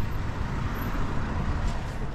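Road traffic noise in the open air: a steady rush with a low rumble underneath.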